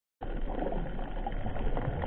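Underwater ambience picked up by a submerged camera: a steady, muffled noisy hiss with faint scattered crackles.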